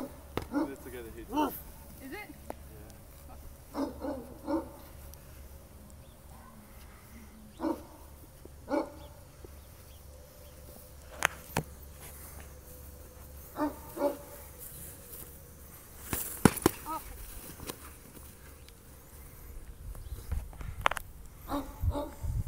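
Padded foam swords striking shields and bodies in sparring: a few sharp smacks, a pair a little past halfway, a quick cluster about three quarters through and one more near the end, with short vocal sounds between them.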